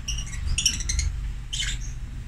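Lovebirds giving short, high chirps: a quick cluster about half a second in and another brief one near the end, over a low steady rumble.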